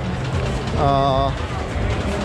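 Busy pedestrian street ambience: a steady low rumble under crowd noise, with one short stretch of a voice about a second in.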